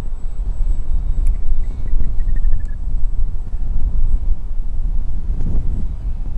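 Wind buffeting the microphone: a loud, uneven low rumble. About two seconds in, a faint series of short high notes steps down in pitch.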